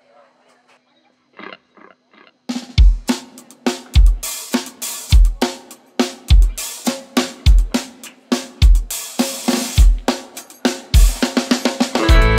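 Live drum kit coming in with a groove: a bass drum kick about once a second, with snare, hi-hat and cymbal hits between, ending in a quick fill. A faint low steady tone and a few light taps come before the drums start, about two and a half seconds in.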